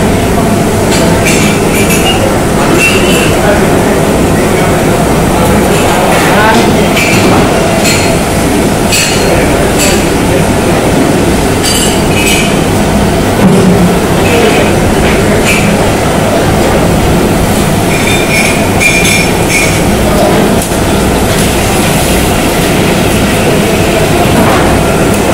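Busy stall kitchen: loud, steady rumble of gas burners and the extractor hood, with frequent short metallic clinks of tongs and ladle against bowls, pots and trays.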